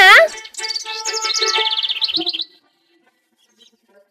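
Cartoon sound effect: a rapid, bird-like chirping trill over a few sustained musical tones, lasting about two seconds.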